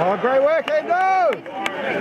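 A voice shouting in two drawn-out calls, the first rising in pitch and the second rising then falling, with a few sharp clicks in between.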